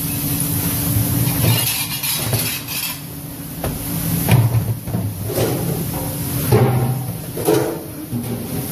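Ceramic plates and plastic dish racks knocking and clattering as dishes are handled at a commercial dishwashing station, a sharp knock every second or so, over a steady low machine hum.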